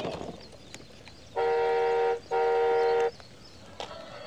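Electronic horn of a children's ride-on electric motorcycle, played through the toy's speaker: two flat honks of under a second each, close together.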